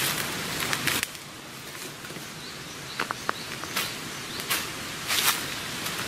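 Footsteps on dry leaf litter at a walking pace, spaced strokes over a steady outdoor hiss, with a few short high chirps about three seconds in.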